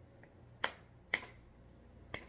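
Two finger snaps half a second apart, keeping time to a gospel hymn between sung lines.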